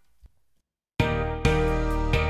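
A second of near silence, then an instrumental pop backing track, programmed accompaniment with a steady beat, starts abruptly about a second in.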